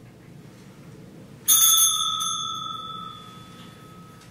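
A small bell struck once, ringing with a bright, clear tone that fades away over about two and a half seconds. It is typical of an altar bell rung at communion during Mass.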